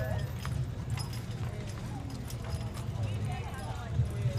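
A draft horse's hooves clip-clopping on asphalt at a walk as it pulls a carriage past. People talk in the background over a steady low hum.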